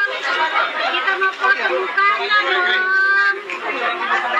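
Several people talking and chattering at once, with no clear words.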